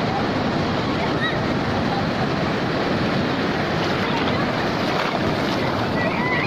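Sea surf breaking and washing up the shore close around a microphone held at the waterline: a steady rush of water.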